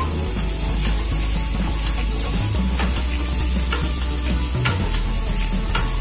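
Chopped onions sizzling in hot oil in a stainless steel kadai while a wooden spatula stirs and scrapes them around the pan, sautéing them.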